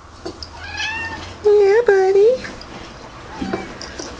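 Domestic cat meowing: a faint call about a second in, then two loud meows in quick succession around the middle, each rising in pitch at the end.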